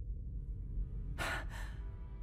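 A man's short breathy laugh through the nose: two quick exhales over a low rumble. Faint held music tones come in near the end.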